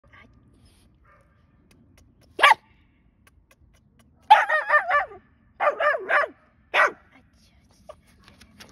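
Small dog on the other side of a wooden fence, vocalizing in distress. It gives one short yip about two and a half seconds in, then two runs of quick, wavering high-pitched whines, and another short yip near the end.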